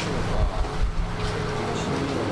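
A steady low hum under faint background voices, with a few dull low thumps about half a second in.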